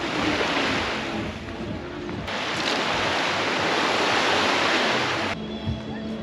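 Sea surf washing onto a beach: a steady rush of waves. It turns brighter and louder about two seconds in, then cuts off abruptly near the end.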